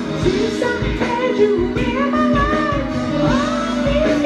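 A man singing a soul song over backing music with a steady beat.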